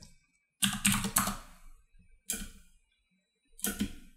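Computer keyboard keys typed in three short bursts with pauses between them.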